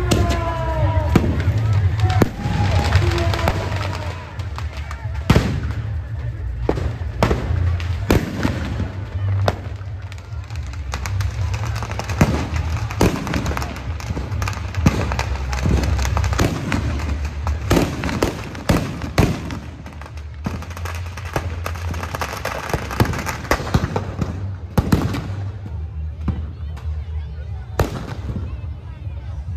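Firecrackers bursting in quick, irregular succession, dozens of sharp cracks, over a steady low rumble; the cracks thin out near the end.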